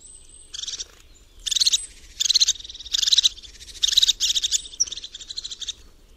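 Crested tit calling: a series of short, fast, bubbling trills like pearly laughter, about one a second, the call that sets it apart from all other tits.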